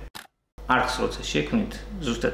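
A man talking, cut by an edit just after the start: a short click, then a split second of dead silence before his speech resumes.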